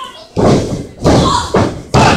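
Heavy thuds on a wrestling ring's canvas: several sudden impacts, two close together near the end, each trailing off in hall echo.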